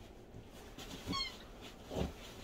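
A pet's squeaky toy giving one short, high squeak about a second in.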